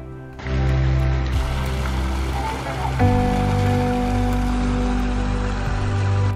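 Background music holding sustained chords, with a chord change about halfway through, over a steady rush of running water.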